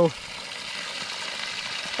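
Water pouring steadily from the open outlet of a busted old iron fire hydrant, splashing onto rocks on the ground.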